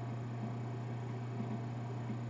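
A steady low hum under a faint, even hiss: the background noise of the recording, with nothing else happening.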